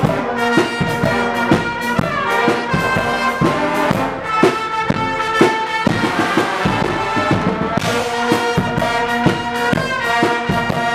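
Guggenmusik brass band playing loudly: trumpets and trombones in sustained chords over a steady bass drum and cymbal beat.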